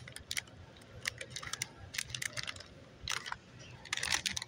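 Clear plastic bag of a toy package crinkling and clicking as it is handled at a wire peg display, irregular small crackles in short clusters.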